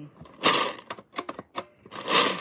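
Small plastic bingo balls rattling and clicking inside the clear dome of a toy bingo machine as it is worked by hand to mix them. There is a rattling burst about half a second in, a run of separate clicks, then another burst near the end.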